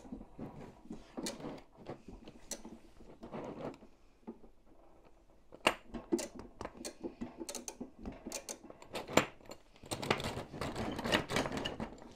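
Metal track links of a 1/6 scale tank model clicking and clinking irregularly as the loose track is handled to take up its slack. There is a lull near the middle, a few sharper clacks, and denser clicking toward the end.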